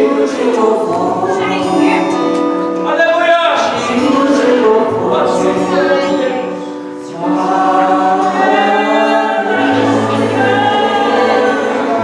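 Gospel worship song: several women singing together into microphones over instrumental accompaniment with a held low bass. The music eases briefly a little past the middle, then swells back up.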